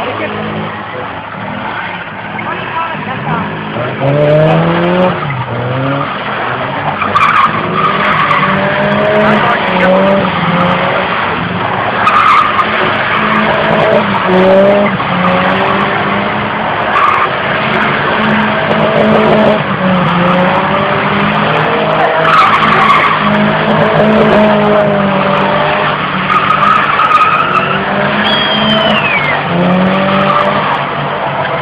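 Cars drifting: engines revving hard, with a rising rev about four seconds in, and tyres squealing in repeated wavering screeches as the cars slide.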